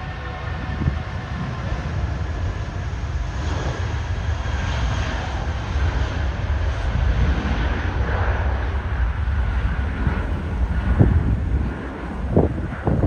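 An Airbus A320-family airliner's twin jet engines at takeoff thrust: a steady, loud rumbling roar as it rolls down the runway and lifts off. Wind buffets the microphone in gusts near the end.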